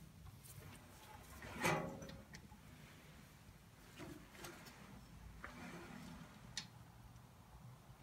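A short low grunt of effort, then a few faint clicks and scrapes of a hand wrench on small bolts of the Onan engine, which is not running.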